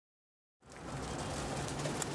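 Silence for about half a second, then the sound fades in on a flock of domestic pigeons cooing softly.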